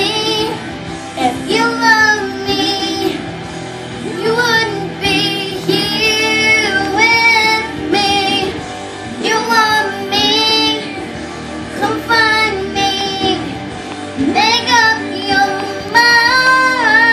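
A young girl singing solo in held phrases with wavering vibrato, pausing briefly between lines.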